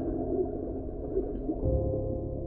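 Muffled underwater sound of a person plunging into a pool, the water rush and bubbles dulled, under a low droning ambient music track. A sustained, gong-like tone comes in near the end.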